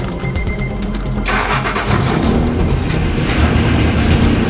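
A car engine starting about a second in and then running, heard over background music with a beat.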